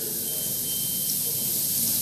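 Steady hiss of room tone picked up by a chamber microphone, with a faint thin high tone that sounds for about a second near the start.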